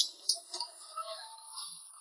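Meat cleaver chopping through roast goose onto a thick wooden chopping block: a sharp chop at the start and another about a third of a second later, over faint background voices.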